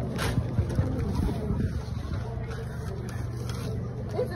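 A steady low hum runs under the window. About a quarter second in comes a brief rustle of large brown pattern paper being handled on the table, with faint voices in the room.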